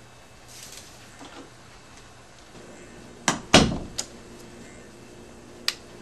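An indoor door being opened and shut: a click, then a thump about three and a half seconds in, followed by two lighter clicks.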